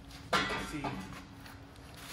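Steel exhaust header clanking against the floor as it is set down: a sharp metal knock about a third of a second in, then a fainter clink, with a few spoken words over it.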